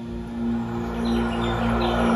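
Opening music of a marching band show: low sustained notes that swell in loudness, with short high chirps repeating above them from about a second in.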